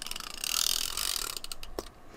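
Portable tape runner drawn across cardstock. Its gears whir and tick for about a second as the double-sided adhesive tape unrolls onto the paper, with a few sharp clicks at the start and near the end.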